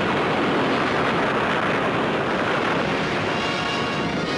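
A dubbed sound effect for a missile hitting a target drone: a steady rushing rumble of noise with no tune, cutting in as the music stops.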